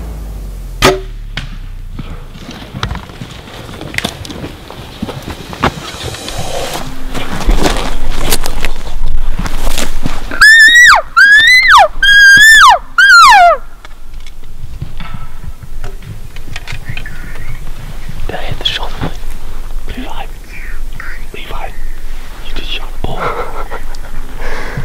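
Four short, high elk mews in quick succession, each sliding down in pitch at its end, over loud rustling of brush and handling. Low whispering follows.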